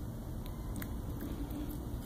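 Domestic cat eating soft food, with faint chewing and licking and a few small clicks.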